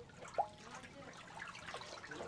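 Faint swishing and trickling of a little water as a wooden pestle is worked around inside a stone mortar to rinse it. A short pitched blip comes about half a second in.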